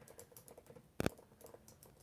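Faint computer keyboard typing: light, irregular key clicks, with one sharper click about a second in.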